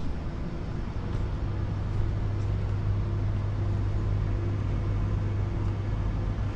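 A steady low machine hum that holds one pitch throughout, with faint higher tones over it.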